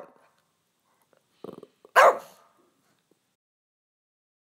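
A dog barking: one loud, short bark about two seconds in, with softer sounds just before it.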